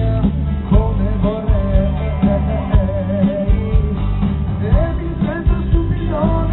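Live pop-rock band performing: a male lead singer holds long, wavering sung notes over electric bass and a steady drum beat.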